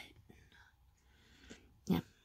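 Mostly quiet room tone between a woman's remarks: her voice trails off at the very start, a faint breathy whisper-like sound follows, and a short sharp breath or mouth noise comes just before the end.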